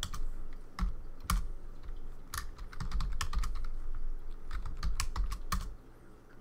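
Computer keyboard being typed on: irregular key clicks, a few per second, stopping shortly before the end.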